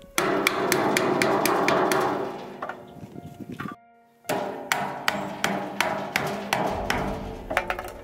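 Hammer striking a PVC pipe fitting to knock it into place: a run of quick blows, about four a second, broken by a short silence near the middle.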